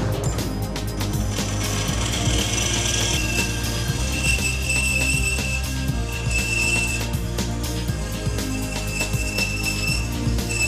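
A bandsaw switched on and running steadily as its blade cuts through a wooden block, under background music.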